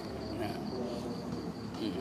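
An insect trilling: a steady, high-pitched pulsing trill that holds unchanged throughout.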